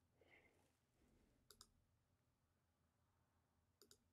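Near silence, with a few very faint clicks: a pair about a second and a half in and another just before the end.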